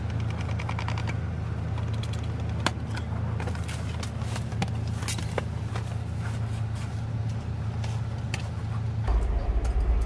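Plastic stretch wrap crackling and tearing as it is pulled off a pallet of cardboard boxes, with a quick run of ticks about a second in. Under it is the steady low hum of an idling engine, which turns deeper and louder near the end.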